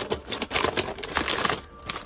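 Hand rummaging through plastic snack packets in a wicker basket: the wrappers crinkle and rustle in a burst of rapid crackling that starts about half a second in and lasts about a second.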